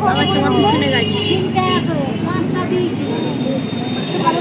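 Bustle of a street market: several people talking at once, over a steady hum of road traffic.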